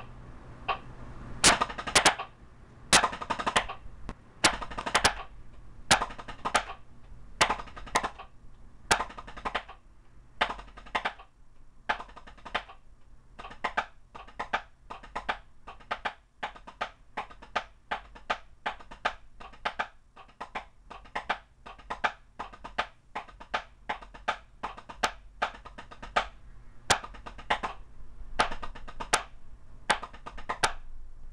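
Wooden drumsticks striking a rubber drum practice pad, playing single-stroke rudiments to a metronome at 80 bpm. The first ten seconds hold louder clusters of strokes; after that comes a steady run of even, quieter strokes in groups of four, the single stroke four.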